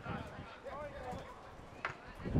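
Players shouting and calling to each other across an open football pitch, heard at a distance. A single sharp knock comes near the end.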